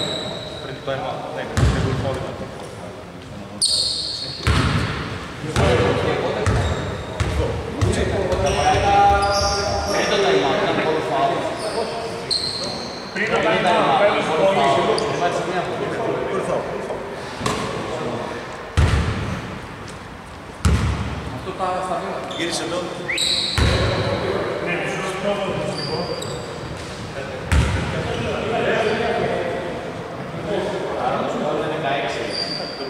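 Men talking on a basketball court in a large hall, with a basketball bounced a few times on the wooden floor.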